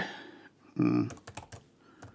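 A quick run of keystrokes on a computer keyboard as a word is typed, after a short vocal sound about a second in.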